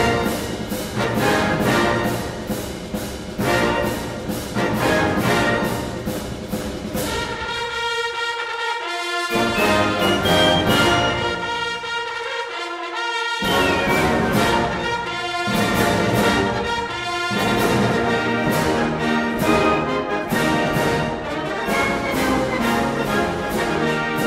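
A military band with bugles playing brass-led concert music over a steady drum beat. Twice the bass and percussion drop out for about a second, leaving only the upper brass sounding.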